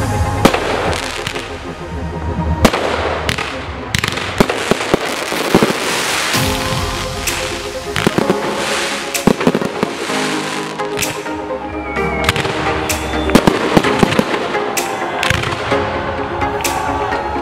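Aerial fireworks firing and bursting in quick succession, with many sharp bangs and some crackle, mixed with music playing over them.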